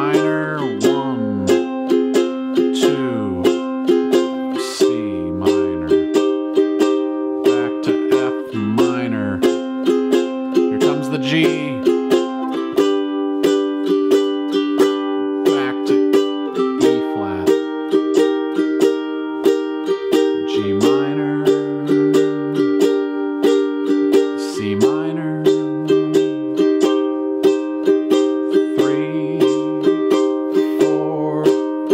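Kala ukulele strummed in a down-down-up-down-up pattern through a minor-key progression (E-flat, G minor, C minor, F minor, G) at 90 beats per minute, changing chord about every four seconds. A metronome ticks along with it.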